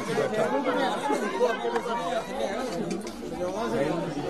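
Several people talking at once, their voices overlapping in steady chatter.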